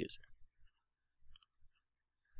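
Faint computer mouse clicks a little over a second in, otherwise near silence.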